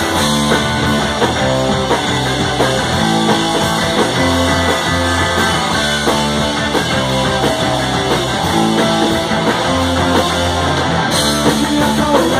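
Live rock band playing at a steady, loud level, with electric guitars, bass and drum kit, recorded from within the audience.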